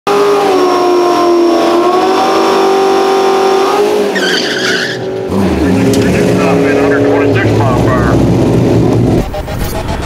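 Cammed 2006 Corvette Z06 V8 held at high revs with tyre squeal, as in a burnout. It then drops to a lumpy low-rpm rumble, with a whoosh near the end.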